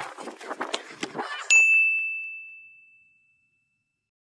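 A single clear, high ding sound effect that starts sharply about a second and a half in and fades away over about a second and a half. It is edited in over the footage.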